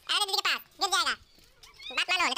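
A baby vocalizing in three short high-pitched calls, then a rising call near the end.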